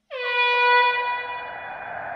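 Air-horn-like sound effect: one long tone that dips slightly in pitch at its start, then holds steady and slowly fades. It is a transition sting leading into an animated logo intro.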